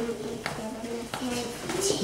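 A child speaking softly, too quiet for the words to carry, with a few light clicks.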